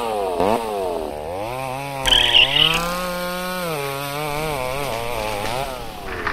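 Chainsaw engine revving up and down in repeated swells, its pitch climbing about two seconds in with a brief harsh burst, holding high, then sinking away near the end.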